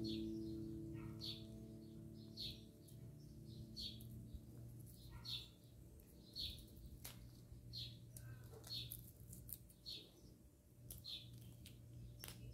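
A small bird chirping again and again, short high chirps about once a second, faintly. A held music chord fades away under it during the first few seconds.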